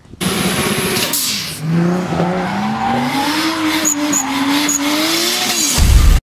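A car drifting: tires squealing in a long slide while the engine's pitch climbs steadily as it revs higher. A loud low boom comes just before the end.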